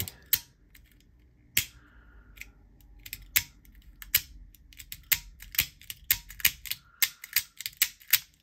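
Toggle Tools Mini multi-tool's slide-and-pop mechanism clicking as the tool selector is slid and the tools are popped up and pulled back down. It makes a string of sharp clicks, sparse at first and then coming about three or four a second in the second half.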